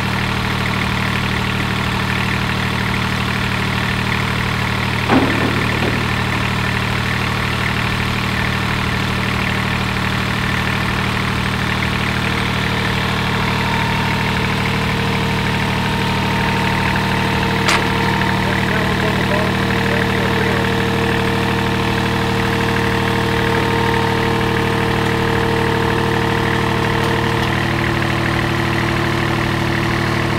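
Toro Greensmaster 3250-D greens mower's diesel engine running steadily at low throttle. Two sharp knocks come through, one about five seconds in and one a little past halfway.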